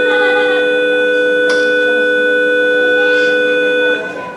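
Microphone feedback through a PA system: a loud, steady whistle of several held tones at once, with faint speech beneath it, that cuts off suddenly just before the end.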